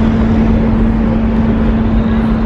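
Large passenger ferry's engines running while moored: a steady, loud drone with a constant low hum and a rumble beneath it.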